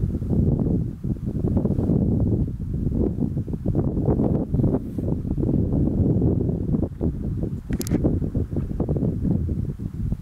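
Wind buffeting the camera's microphone: a gusty low rumble that keeps rising and falling. A brief hiss comes a little before the end.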